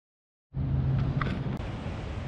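A steady low hum over an even outdoor noise, starting about half a second in after silence, with a couple of faint clicks.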